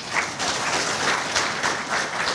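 An audience applauding, many people clapping together.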